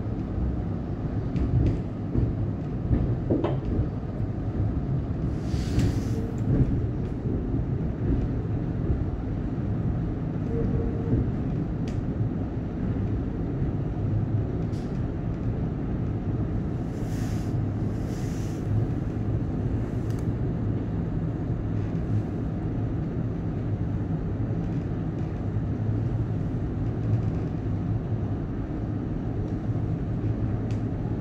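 Cabin sound of a Siemens Nexas electric suburban train running: a steady low rumble throughout, with short hisses about six seconds in and twice more a little past halfway.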